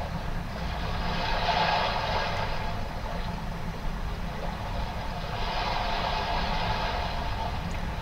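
Soft ambient meditation music played through a small Amazon Echo Dot speaker, a hazy sound that swells and fades twice, over a steady low hum.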